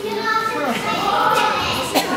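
Several people's voices talking over one another in a crowded room.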